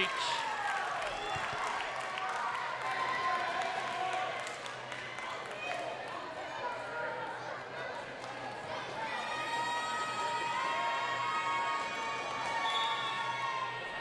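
Players and crowd shouting and cheering in a gym after a volleyball point is won, with a volleyball bouncing on the hardwood floor. Voices overlap throughout, and near the end some calls are held longer.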